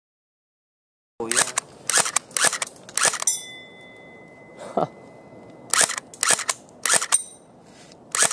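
Tokyo Marui Electric Gun Boys MP5A5, a low-power electric airsoft gun, firing sharp short shots about two a second, starting about a second in. There are four shots, a pause of about two and a half seconds, then three more.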